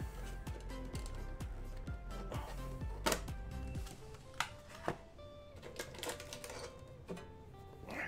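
Quiet background music with a few sharp clicks and light rustling from Pokémon trading cards and their plastic packaging being handled, the loudest clicks about three and five seconds in.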